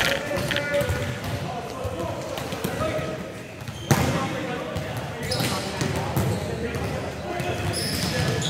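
Volleyballs being struck and bounced during passing practice: irregular smacks of hands and forearms on leather balls and thuds of balls on the hard court floor, echoing in the large hall, with a loud hit about four seconds in. Players' voices murmur underneath.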